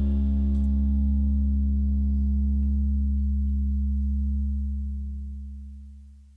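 Music: the song's final chord, with a deep low note underneath, held and ringing out on electric guitar through effects. The higher tones die away first, and the whole chord fades out over the last second or two.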